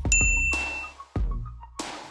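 A single bright ding sound effect that rings and fades within about a second, over background music. A short burst of noise comes near the end.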